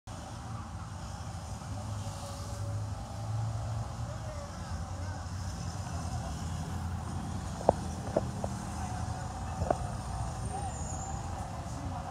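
Steady low rumble of busy city road traffic, buses and cars passing, with a few sharp knocks in the second half.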